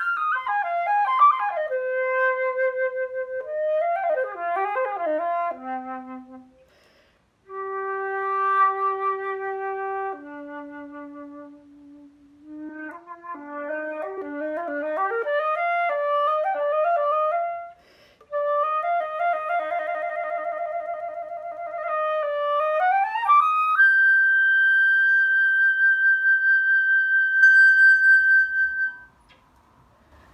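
Solo silver concert flute playing an unaccompanied melody of held notes and quick running passages, with a short pause about seven seconds in, ending on a long high held note.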